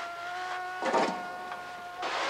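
A man's cry held on one high note as he drops down a chimney, with a short rush of noise about a second in.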